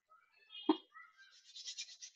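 A man's faint, wordless voice sounds: a brief vocal murmur about 0.7 s in, then a soft breath in just before he speaks again.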